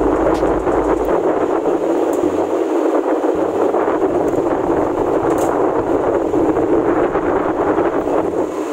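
Wind buffeting the microphone while riding on a motorbike: a steady, loud rushing noise.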